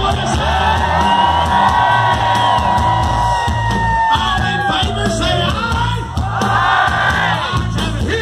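Hard rock band playing live through a big festival PA, with a long held high note that slides down in pitch about four to five seconds in, over a crowd cheering.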